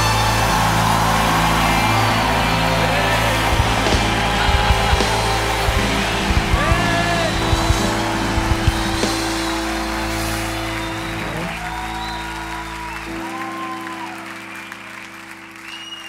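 A live band holds a sustained final chord that fades out gradually, with a few scattered drum hits. The bass drops out near the end, and brief vocal calls rise over the held chord.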